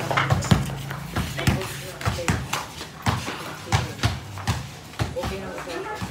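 Basketball bouncing on a concrete court, a string of irregularly spaced dribble thuds, with players' voices calling out.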